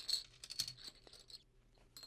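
A plastic Connect Four disc dropped into the upright grid, clattering down its column in a quick run of clicks that dies away within about a second.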